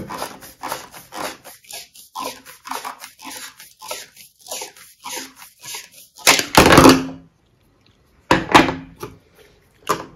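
Handheld rotary pipe cutter being turned around a 50 mm plastic sewer pipe: the blade scores the plastic in short rasping strokes, about three a second. Later come two louder clattering knocks, a couple of seconds apart.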